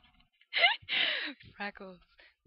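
Girls laughing with breathy gasps and a short falling squeal, then a few spoken words near the end.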